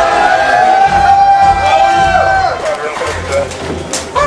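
A song with a singing voice holding long notes over accompaniment, the held note sliding down a little past two seconds in, followed by shorter, broken phrases.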